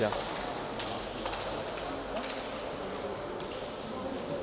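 Reverberant sports-hall background of faint, indistinct voices from players and people around a futsal court, with a few short high squeaks in the first second and a half.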